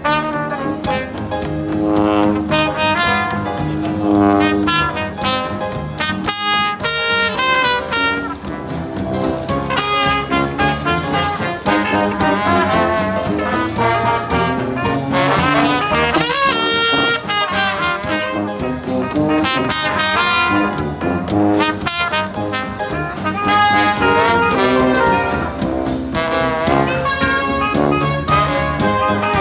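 Live jazz street band playing an instrumental passage led by brass horns, with no singing.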